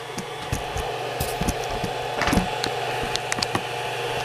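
Steady whirr of the Creality CR-10 3D printer's cooling fans, overlaid by scattered clicks and knocks of the camera being handled and set down.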